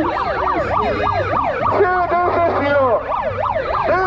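Megaphone's built-in electronic siren sounding continuously, yelping rapidly up and down about four times a second, overlapped in places by a slower rising-and-falling wail.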